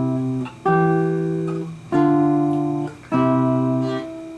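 Nylon-string classical guitar playing a slow waltz accompaniment: one plucked block chord about every second, each ringing and then briefly damped before the next.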